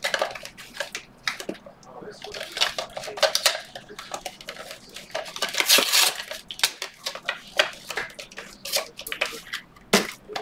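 Hands handling trading-card packaging: clicks, taps and rustles of cardboard and hard plastic. About midway there is a denser scraping, sliding rustle as a small cardboard pack box is opened, and near the end a sharp click from a clear plastic magnetic card holder.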